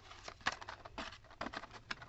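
Light, irregular clicking and rustling of cardboard boxes and plastic blister packaging being handled and shifted in a storage bin.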